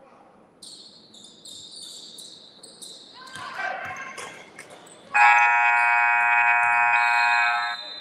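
Gym scoreboard horn sounding one steady blast of about two and a half seconds, the buzzer ending the half. Before it come sneaker squeaks on the hardwood and shouts from the court and stands.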